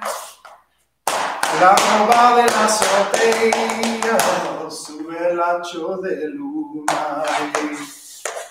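Flamenco footwork: heeled dance shoes striking a wooden floor in quick, sharp taps, starting about a second in, with a man's voice carrying on over them.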